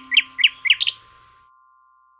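A bird tweeting in a quick run of about six short chirps that stops about a second in. Underneath is the fading ring of a chime left from the song's closing notes.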